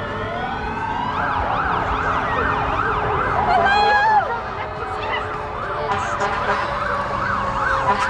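Emergency vehicle siren: a slow wail dips and rises, then about a second in it switches to a fast yelp, sweeping up and down about three times a second.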